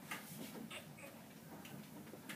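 Faint, scattered small clicks and ticks, a few at uneven spacing, over quiet room tone.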